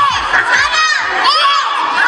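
A group of young children shouting together, many high voices overlapping in short rising-and-falling calls.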